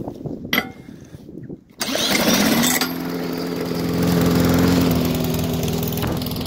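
A push mower's engine being spun over with a drill on the flywheel: it catches within about a second of the drill starting. It then runs steadily, growing a little louder near the end.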